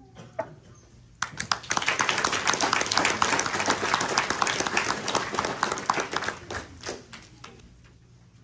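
Audience applauding: the clapping starts about a second in, runs for about five seconds, then thins out to a few last claps.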